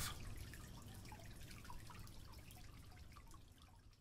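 Water dripping and trickling in a shower: small drops falling irregularly over a faint low rumble, fading out toward the end.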